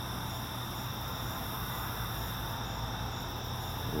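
Crickets and other night insects calling steadily in several high, continuous trills, with one call above them repeating in short regular pulses. A low steady hum lies underneath.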